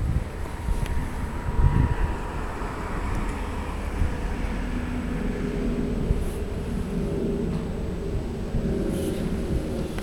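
Wind rumbling on the camera's microphone, with a steady low hum underneath from about halfway through.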